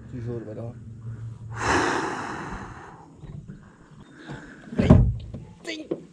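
A man's hard, breathy exhale with a few quiet murmured words around it, then a single sharp knock about five seconds in.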